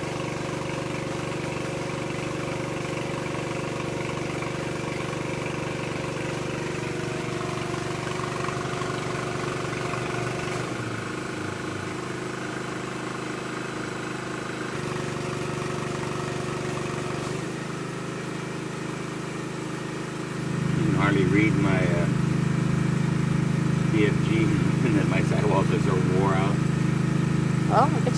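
Air compressor running steadily while a large off-road tire is filled through an air chuck on its valve stem; the hum shifts a few times and gets louder about twenty seconds in.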